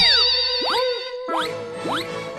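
Cartoon sound effect of quick rising 'boing' swoops, three in two seconds, over a held musical note, the kind of comic sound that goes with dazed, dizzy characters.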